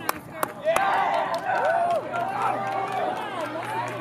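Several voices shouting and calling out over each other on a soccer pitch, with two sharp knocks in the first half second. A low steady hum comes in about halfway.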